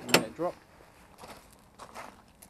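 A single sharp metal clank as the unpinned linkage arm of a ride-on mower's front deck drops, followed by faint footsteps crunching on gravel.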